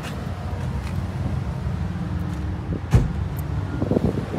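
A car door of a 2016 Nissan Rogue thumps shut once about three seconds in, over a steady low rumble.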